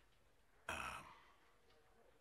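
One short breathy sigh about two-thirds of a second in, otherwise near silence.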